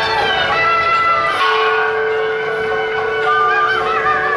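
Temple procession music: steady ringing, bell-like tones under a wandering, wavering wind melody, continuous and fairly loud.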